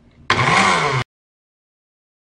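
A man's loud, rasping cough, lasting under a second and cut off abruptly.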